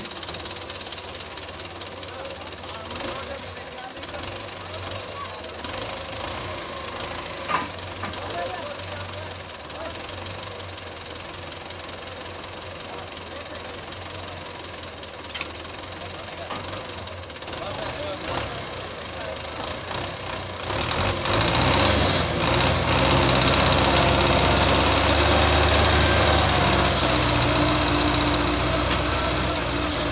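Modified Belarus tractor's diesel engine working under load as it tries to pull a stuck, loaded trolley. About two-thirds of the way through, the engine gets much louder as it is pushed harder, and it stays loud nearly to the end.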